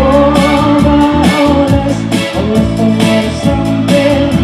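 A live band playing an upbeat pop song over a concert PA, with a singer's voice held over a steady drum beat.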